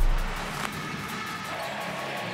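Graphic-transition sound effect: a deep boom that dies away in the first half-second, leaving a quieter steady music bed of held tones.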